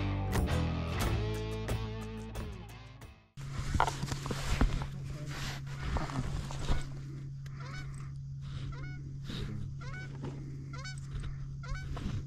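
Guitar music fades out over the first three seconds; then Canada geese honking, a run of short repeated honks from about seven seconds in, over a steady low hum and a few knocks.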